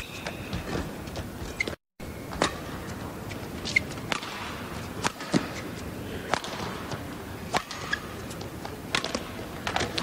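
Badminton rally: rackets hitting a shuttlecock back and forth, sharp cracks roughly every second, with a few shoe squeaks on the court over a steady hum of the arena crowd. The sound cuts out completely for a moment near 2 s.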